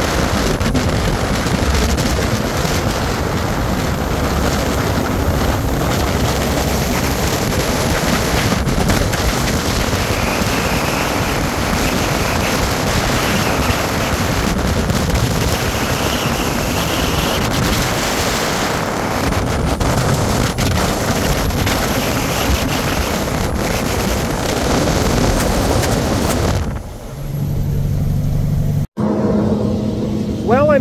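International log truck driving on a paved road, running empty: a steady mix of engine, tyre and wind noise. Near the end the noise drops away to a low, steady engine hum, then cuts off abruptly.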